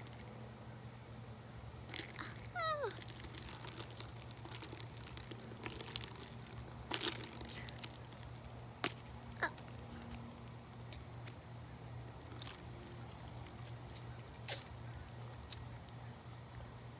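Quiet drinking from a plastic sports water bottle: a few scattered small clicks and sips, with one short squeak falling in pitch a few seconds in, over a steady low hum.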